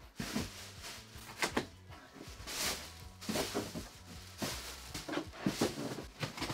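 A cardboard TV carton and its plastic bag being handled: scattered light knocks and rustles, several separate ones spread across the few seconds.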